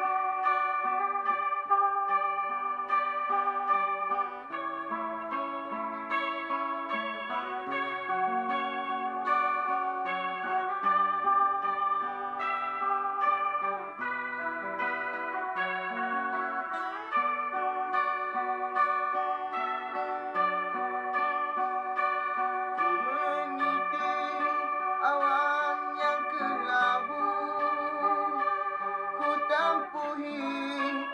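An Ibanez electric guitar plays a sustained single-note lead melody over a strummed acoustic guitar, as an instrumental intro. Toward the end the lead bends and slides between notes.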